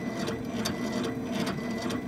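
Laser engraver at work on a rotary attachment: the gantry's stepper motors whir and hum steadily as the head sweeps across the bamboo, with a sharp tick every half second or so.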